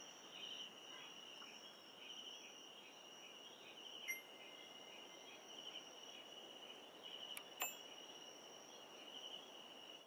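Faint night ambience of crickets chirping steadily in a regular pulsing rhythm. Two soft chime-like pings, one about four seconds in and one near eight seconds.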